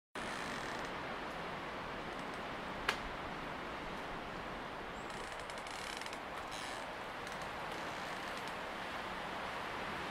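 Steady, even background noise with no tune or voice, broken by a single sharp click about three seconds in.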